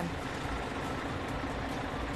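A bus's engine idling steadily, a low rumble with a steady hum, as the bus stands at a stop with its door open.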